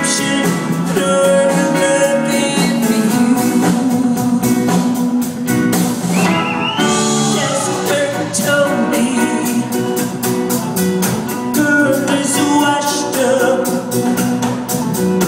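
Live rock band playing with electric guitars, bass and drums keeping a steady beat, and a woman singing over them.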